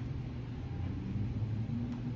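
A steady low rumbling hum of background noise in the room, with no speech.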